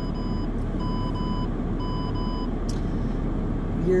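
Three pairs of short electronic beeps, one pair about every second, then stopping after about two and a half seconds, over the steady hum inside an idling car's cabin.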